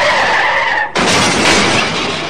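A skidding sound with a held high tone, then a brief break about a second in and a noisy crash as a rock-loaded toy dump truck tips over onto its side and spills its load.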